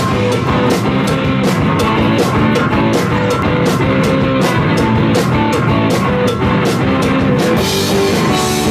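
Rock music: a band with drum kit and guitar playing at a steady beat, the drum strokes evenly spaced throughout.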